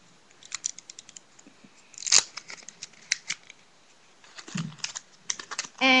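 Thin plastic seal being peeled and torn off the top of a drink bottle: a run of small crackling clicks, with a louder tearing rip about two seconds in and more crinkling near the end.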